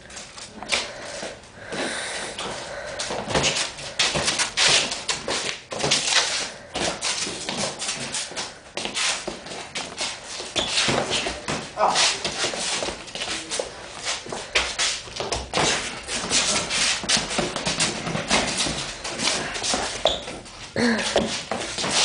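Boxing gloves landing in quick, irregular hits during sparring, with vocal grunts and cries between the blows. A man exclaims 'oh' near the end.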